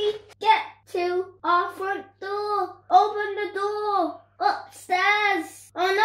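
A child's voice chanting in a sing-song way: a run of drawn-out syllables, each rising and falling in pitch.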